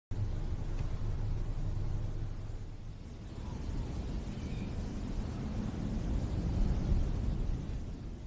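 A low, steady rumble with no melody or beat, which dips slightly about three seconds in.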